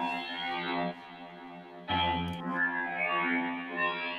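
Atmospheric synth patch from the OSCiLLOT modular synth, distorted through Guitar Rig's Handbrake Blues preset, playing sustained buzzy, guitar-like tones. A louder new note enters about two seconds in.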